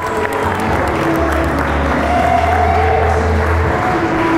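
Music with held melody notes over a sustained bass line, mixed with guests applauding and cheering.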